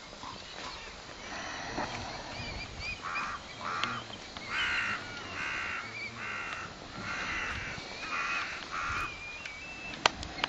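A bird giving a series of about eight harsh calls, each about half a second long and less than a second apart, with thin, high, wavering bird notes between them.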